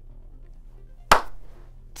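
A single sharp smack or clack about a second in, dying away within a fraction of a second, over a low steady hum.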